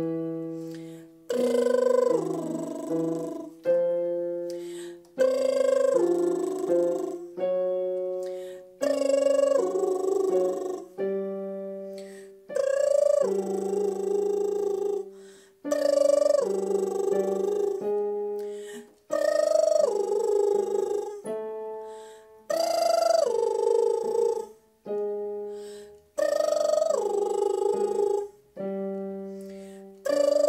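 Lip-trill vocal warm-up: a woman's voice buzzing through fluttering lips, sliding up and down in a short pattern, over an electronic keyboard. Each repeat starts with a struck chord, about every three and a half seconds.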